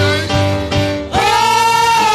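Female gospel vocal group singing with keyboard accompaniment. Just after a second in, the voices swell into one long held note.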